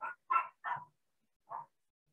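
A dog barking faintly: three short yaps in quick succession, then one more a second later.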